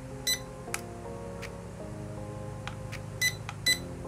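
Short electronic beeps from the SG701 drone's remote control as it is switched on and links to the drone: one beep just after the start, then two close together near the end, with a few faint clicks between, over background music.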